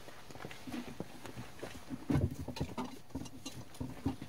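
Quiet, irregular footsteps and light knocks as a golfer walks up to his ball and sets his feet at address.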